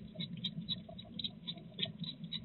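A hedgehog chewing and smacking its food: a quick, irregular run of small wet clicks, over a steady low hum.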